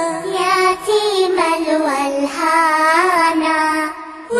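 Background song: a solo voice sings a slow, ornamented melody with wavering pitch over a soft musical backing, pausing briefly at the end.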